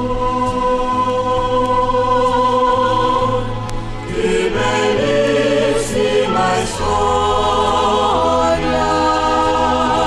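Recorded choral music: voices hold long sustained notes over a steady bass, moving into a new phrase about four seconds in.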